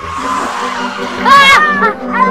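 Car tyres screeching under hard braking: a rush of skidding noise, then a loud squeal that rises and falls about a second and a half in.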